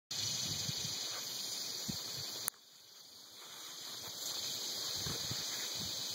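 Open-field ambience: a steady high-pitched drone of insects with wind rumbling on the microphone. A click about two and a half seconds in, after which the sound drops away sharply and slowly swells back.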